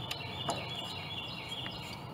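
A songbird singing a quick run of repeated high notes, with a faint knock about half a second in.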